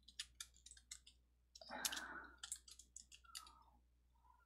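Computer keyboard keys clicking irregularly as a couple of words are typed, quiet throughout, with a brief louder noise about halfway through.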